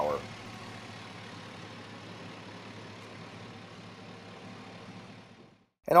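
The 2004 Chevrolet SSR's 5.3-litre Vortec V8 idling steadily, heard at the open engine bay: an even mechanical hum. It cuts off abruptly just before the end.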